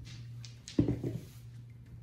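A pair of dice thrown onto a felt-covered craps table: a quick cluster of knocks about a second in as they land, bounce and tumble to a stop.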